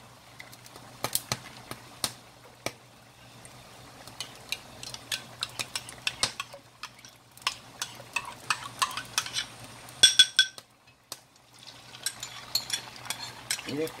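Hot oil in a frying pan crackling and spitting. About ten seconds in, beaten eggs are poured in with a short bright clink, and after a brief lull the eggs crackle and sizzle densely as they start to fry into an omelette.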